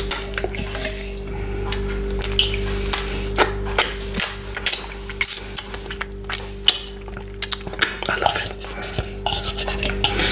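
Close-miked mouth and finger-licking sounds while eating frozen chopped pineapple, with many short clicks and clinks of the frozen pieces and a hard plastic bowl being handled.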